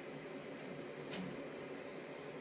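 Quiet room tone, with one faint tap a little after a second in.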